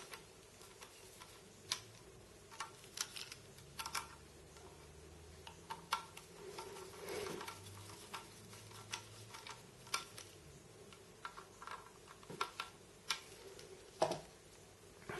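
Faint, irregular clicks of a small screwdriver bit turning metal mounting screws into the side holes of a Crucial C300 SSD's casing.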